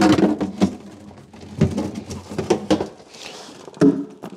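Knocks, clunks and rustling from a frozen EV charger and its stiff coiled cable being lifted out of a chest freezer, with a scraping rustle about three seconds in.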